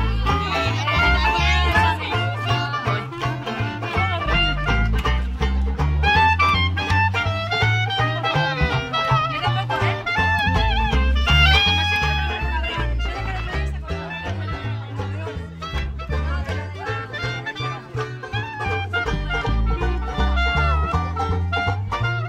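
Live acoustic swing band playing an up-tempo number: clarinet carrying the melody over strummed banjo and an upright bass plucking a steady, stepping bass line.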